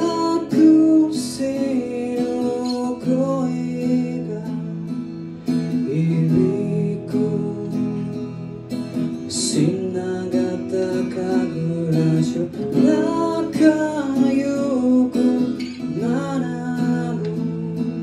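A man singing live while strumming an acoustic guitar, the chords ringing steadily under his sung phrases.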